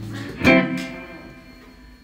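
A plucked string instrument note struck about half a second in, ringing and fading away over the next second and a half.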